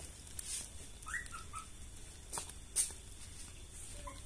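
A puppy gives a few faint, short high-pitched whimpers about a second in, followed by a couple of soft knocks.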